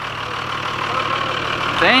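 A vehicle engine idling steadily.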